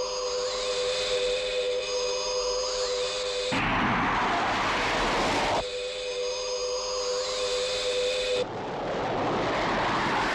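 Science-fiction spacecraft sound effects that cut back and forth. An alien UFO's electronic hum of several steady tones with slowly gliding pitches alternates with the rushing roar of an interceptor's rocket engine, twice each.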